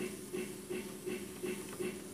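Faint, evenly repeating pulses, about three a second, from a model-railroad sound-effects unit (MRC Sound Station) playing its train sound.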